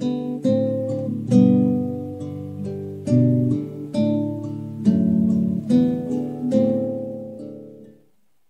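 Acoustic guitar fingerpicking a slow hymn melody over chords, each note plucked and left to ring. The playing fades in the last second and then stops abruptly.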